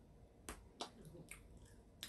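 A few faint, short mouth clicks from chewing tough dried squid.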